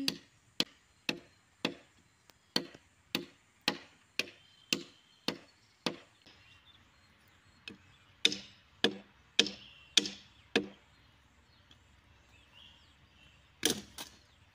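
A machete-like blade chopping into a wooden log, sharp strikes about two a second: a run of about a dozen, a pause of a couple of seconds, then five louder blows and one more near the end.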